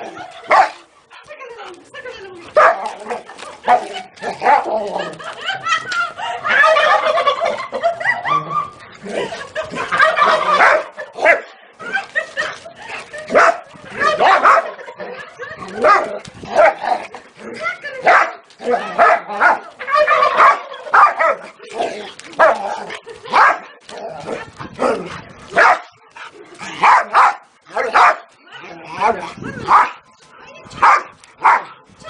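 A dog barking repeatedly in short, sharp barks, one every second or so, with denser runs in places.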